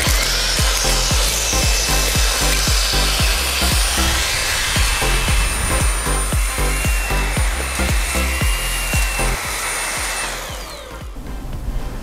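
Xiaomi Mi Handheld Vacuum Cleaner 1C, a cordless handheld vacuum, running with a steady whine and rush of air as its crevice tool sucks crumbs off a leather sofa; it stops about ten and a half seconds in. Background music with a steady beat plays throughout.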